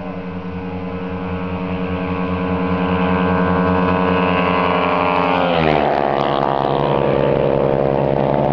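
A 200 cc motorcycle at full throttle approaching at speed, growing steadily louder, then passing close by about five and a half seconds in, its engine note dropping sharply in pitch as it goes past.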